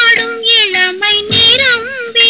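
A woman singing a Tamil film song melody in a high voice, in short phrases with a wavering pitch, over music accompaniment.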